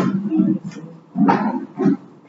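Indistinct voices in the room, in short uneven bursts.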